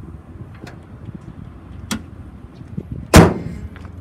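The hood of a 2012 Toyota Sienna minivan slammed shut once about three seconds in: a single loud bang with a short ring after it. A smaller sharp click comes about a second before it.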